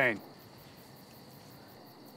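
Crickets chirping faintly in a fast, even rhythm over a steady high-pitched trill; a man's voice finishes a word right at the start.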